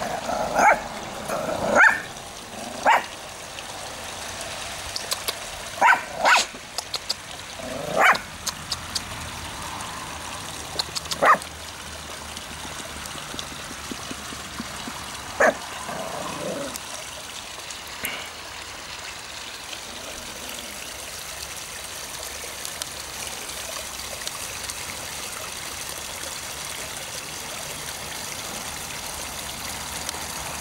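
Small white dog barking in short, sharp, high yaps: a quick run of them in the first few seconds, then single barks every few seconds until about 18 seconds in. Underneath runs a steady trickle of water from a garden pond.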